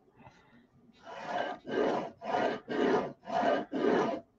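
Pencil scratching across art board paper in quick repeated strokes, six of them at about two a second, starting about a second in.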